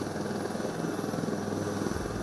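Indian Air Force HAL Dhruv helicopter running on the ground: a steady engine hum with a fast, even rotor pulse.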